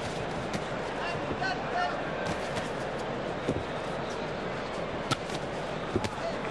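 Steady arena crowd noise with a few sharp slaps of gloved punches landing, the loudest about five seconds in, and faint shouts in the background.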